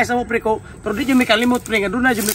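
A man's voice talking, with a short pause about half a second in.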